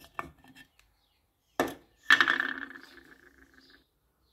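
Metal paint tin being handled: a few small clicks, a sharp knock, then a louder metallic clatter about halfway through that rings on for about a second and a half as it fades.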